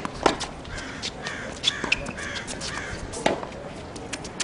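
Tennis ball struck by racquets in a baseline rally on a hard court: two loud, sharp hits about three seconds apart, with a fainter hit from the far end between them.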